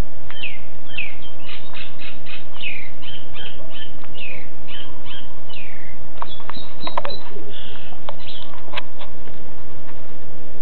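A bird calling: a quick run of about a dozen short, high, down-slurred chirps over the first five or six seconds. A few sharp clicks follow later on.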